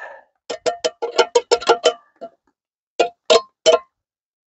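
Metal spoon clinking against a stainless steel pot while stirring thick soup. There is a quick run of about ten ringing clinks, then three more near the end.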